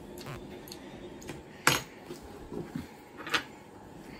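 Light clinks of a dinner plate and cutlery being handled: a few soft ones early on, then two sharper clinks, one about halfway through and one near the end.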